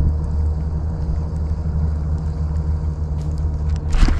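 Steady low rumble with no clear rhythm.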